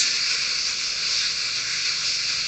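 Steady high hiss of background noise on an internet voice call, with a short click right at the start and no speech.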